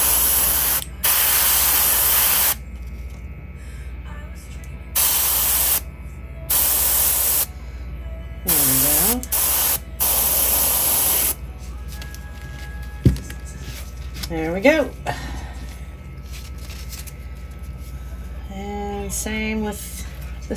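Gravity-feed airbrush spraying paint through a stencil in short bursts: about seven hisses of roughly a second each over the first eleven seconds, with pauses between them.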